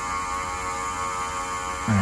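Small smoke leak-test machine running with a steady electric hum, its pump pushing smoke into the carburettors so that air leaks show up.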